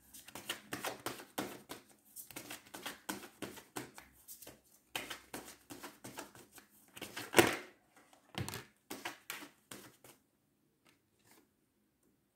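Tarot cards being handled: a run of light clicks and rustles of card stock, with one sharper snap about seven seconds in, stopping about ten seconds in.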